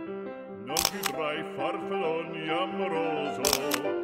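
Upbeat background music with a melody, cut by camera shutter clicks in two quick pairs: one about a second in, the other near the end.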